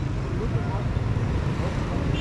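Roadside traffic: a steady low rumble from the engines of passing cars and motorcycles, with faint voices in the background.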